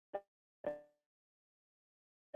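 Dead silence from a video call's noise gating, broken by two brief clipped voice sounds, a short one and a slightly longer one about half a second later.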